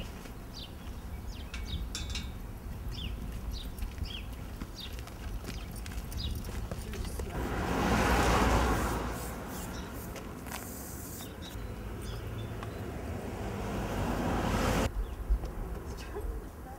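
Residential street ambience: a steady low rumble of wind on the microphone with short high chirps, and a vehicle passing that rises and fades about eight seconds in. The background drops abruptly near the end.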